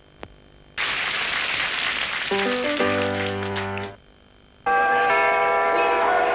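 Music and sound effects of a short cartoon bumper in a TV ad break. A click is followed by a burst of noise lasting about a second and a half. Then come a few low piano-like notes, a brief gap, and a new bright tune starting near the end.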